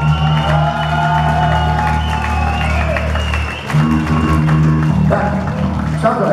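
Rock band playing live through a club PA: electric guitar and bass notes held over a steady low note, with a short dip about three and a half seconds in.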